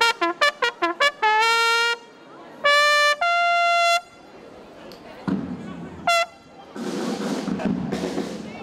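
Military bugle call on a valveless bugle: a quick run of short notes, then a held note, then two longer held notes that end about four seconds in. Near the end a dense rushing noise takes over.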